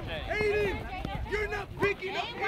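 Several high-pitched voices calling out across a soccer field during play, with a few brief knocks mixed in.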